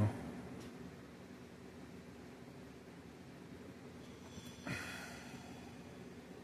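Faint steady room tone, broken once nearly five seconds in by a short rushing sound with a low falling tone.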